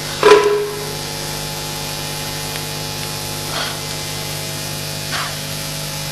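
Steady electrical hum with background hiss in the stage recording. A brief voiced exclamation comes in about a third of a second in, falling and then held for about half a second.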